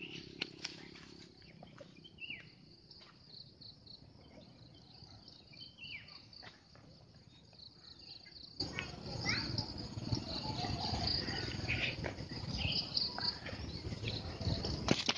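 Forest ambience: a steady, high insect drone with a few birds calling in short, downward-sliding notes. About two-thirds of the way in, a louder rushing noise comes in abruptly and stays to the end.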